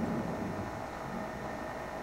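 A pause in a man's speech: steady background hiss and room noise, with the tail of his last word fading just at the start.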